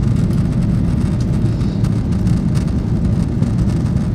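Jet airliner cabin noise in flight: a steady, loud low rumble of the engines and airflow heard from inside the passenger cabin.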